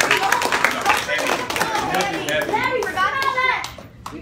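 A room of people clapping, dying away about halfway through as voices take over.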